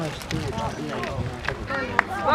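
Voices calling out across an outdoor football pitch, with a few sharp knocks, the sharpest near the end.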